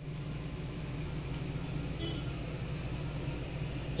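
Steady low hum with a faint hiss underneath, the background noise of the room, and a brief faint high tone about halfway through.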